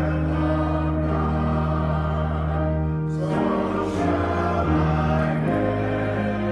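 A congregation singing a hymn together, holding long sustained chords, with a change of chord about three seconds in.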